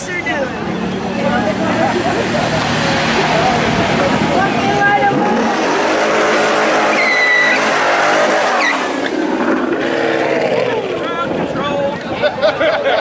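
A Ford Mustang doing a burnout: the engine revs high while the rear tyres spin and squeal on the asphalt, with a sharp squeal about seven seconds in.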